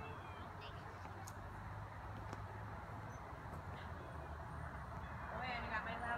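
Quiet outdoor ambience with a low steady rumble and a few faint bird chirps, then faint distant voices near the end.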